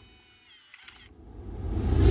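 Sound effects for an animated title sequence: faint, wavering electronic tones and a click, then a rising swell that grows sharply louder toward the end.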